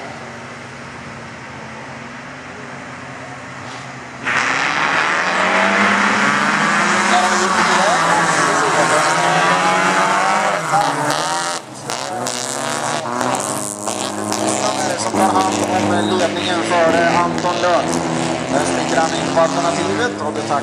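A pack of folkrace cars' engines idling on the start line, then several engines revving hard together as the cars launch from a standing start about four seconds in and race on, engine notes rising and falling through the gears.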